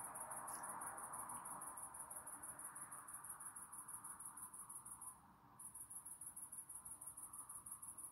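Faint, high-pitched, evenly pulsing trill of insects that breaks off briefly about five seconds in, over low room hiss.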